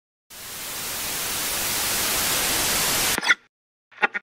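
Intro sound effect for an animated title card: a white-noise hiss swells steadily for about three seconds and cuts off abruptly, followed by a couple of short, bright blips near the end.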